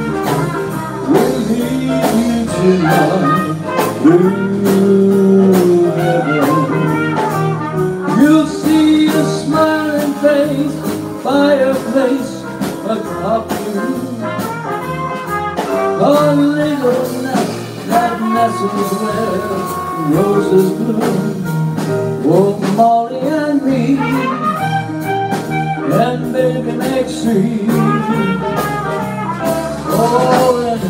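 A small jazz-blues combo playing live: trumpet carrying a bending melodic line over grand piano, electric bass and drum kit.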